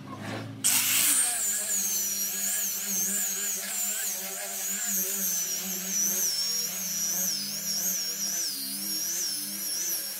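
Small handheld power sander with a round sanding pad starting up about a second in and running against a pine board. Its motor whine wavers up and down in pitch as it is pressed and moved over the wood.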